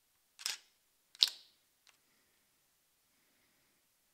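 Canon EOS 700D DSLR body, no lens fitted, firing its mirror and shutter: two sharp mechanical clacks about a second apart, the second louder, then a faint click.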